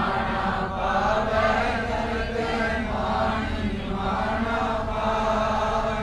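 A congregation chanting a line of gurbani together in unison: many voices blended on a slow, gently moving melody, fairly quiet and diffuse, over a steady low hum.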